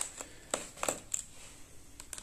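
A Phillips screwdriver clicking against the bottom-cover screws of a Dell Latitude 7290 as they are loosened: about five short, light clicks in the first second or so, then quieter.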